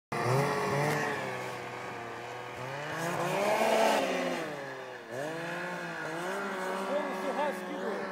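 Snowmobile engine running under throttle as it pulls away through powder, its pitch climbing to a peak about four seconds in, dropping sharply around five seconds, then climbing again.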